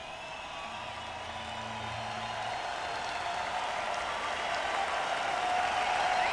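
Audience applauding, growing steadily louder as it fades in.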